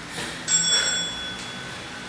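A single bright bell ding about half a second in, ringing and fading away over about a second: a workout interval timer signalling the start of an exercise interval.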